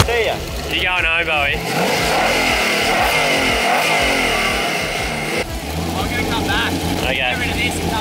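A hot rod roadster's exposed carburetted engine is revved, its pitch sweeping up and down for a few seconds, then settles to a steady idle about five seconds in.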